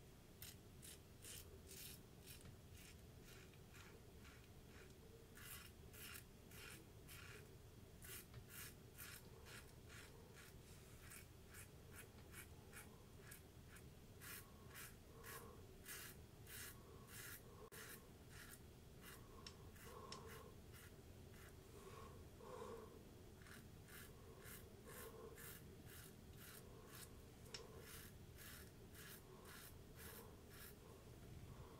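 Safety razor scraping through stubble under shaving lather, many short scratchy strokes in quick runs, faint. It is an across-the-grain pass.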